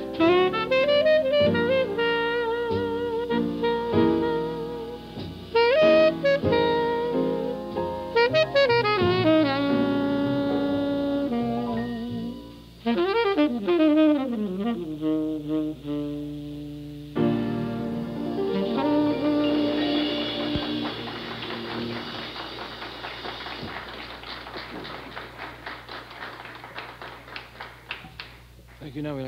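Live 1950s small-group jazz: saxophone phrases and quick runs over piano, bass and drums, with the tune ending about eighteen seconds in. A steady patter of applause follows and slowly fades.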